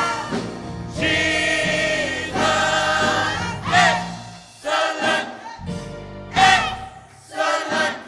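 Gospel mass choir singing, held notes with vibrato rising and falling in phrases. The loudest swells come about four seconds and six and a half seconds in.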